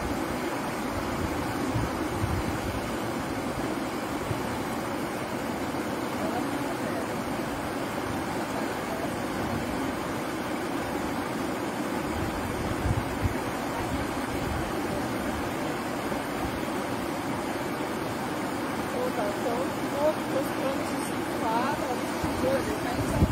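Steady rushing of flowing river water, with no breaks or distinct events.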